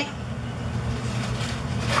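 A steady low hum with a light hiss over it, even throughout, with no distinct knocks or clicks.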